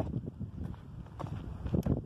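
Wind buffeting the microphone, a low rumble, with a few faint clicks and one sharper click near the end.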